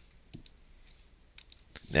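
Faint computer mouse clicks: a couple about a third of a second in and another couple about a second later.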